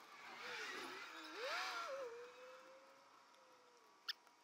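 Small cordless power driver running screws back into an alternator's brush holder: a faint motor whine that wavers in speed for the first couple of seconds, holds steady, then winds down near the end.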